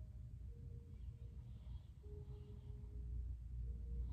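Quiet room tone: a steady low rumble with faint held tones that shift in pitch about halfway through.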